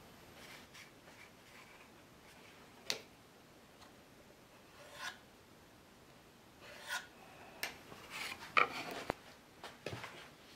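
Faint, short scratching strokes of a pencil drawn along a square on a wooden board, with a sharp click about three seconds in and the loudest scratches near the end.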